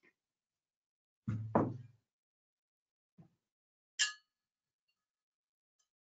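A dull knock about a second in, then, about four seconds in, a crystal glass partly filled with water is struck once and rings briefly with a few clear high tones.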